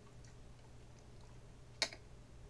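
Quiet room tone with a faint steady low hum, broken by a single sharp click near the end.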